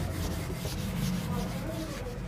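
Handheld whiteboard eraser rubbing across a whiteboard in repeated back-and-forth strokes, wiping off marker writing.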